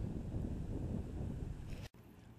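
Wind buffeting a GoPro action camera's microphone: a fluctuating low rumble that cuts off suddenly near the end, leaving a quieter hush.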